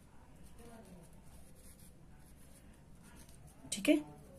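Pen writing on paper, a faint uneven scratching as words are written out. A short burst of voice comes just before the end.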